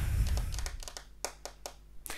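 Tarot cards being handled at the deck on a tabletop: a low bump at the start, then a few light, separate clicks and taps of the cards.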